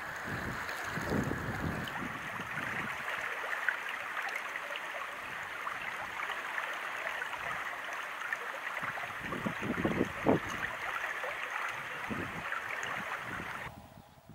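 Shallow upland stream running over stones in a steady rush of water, with wind buffeting the microphone about a second in and again around ten seconds. The water sound cuts off shortly before the end.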